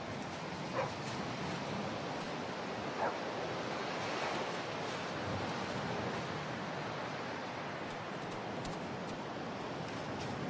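Steady wash of ocean surf on a beach, with two short faint sounds about a second and three seconds in.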